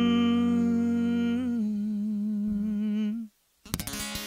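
The last sustained vocal note of a country song, held for about three seconds with a slight waver in pitch and then stopping. After a brief silence, an acoustic guitar strum starts near the end as the next song begins.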